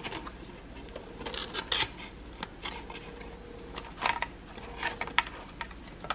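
Stiff cardstock being handled and folded by hand: scattered short crackles and rustles of the paper as flaps are bent and creased.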